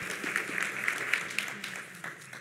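Audience applause, a dense patter of clapping that thins out and dies away toward the end.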